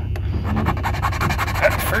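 A small hand file rasping across a key's cut in quick, even strokes, filing down the key's first pin space so that a pin sitting slightly high will lie flush.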